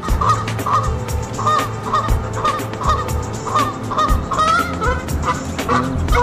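Geese honking over and over, a dozen or so short wavering calls, over background music with a steady low beat.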